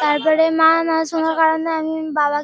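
A high-pitched voice of a girl or woman singing, holding one long steady note with a brief break about halfway through.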